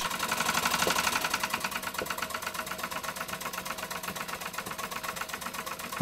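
Stuart S50 model steam engine running steadily under steam, with a fast, even beat and a slight rattle, the sign that its lubricating oil is a bit on the thin side.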